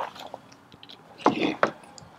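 Hand-pumped hydraulic crimping tool being worked, with a few short creaking, crunching strokes as it presses a copper lug onto a heavy battery cable.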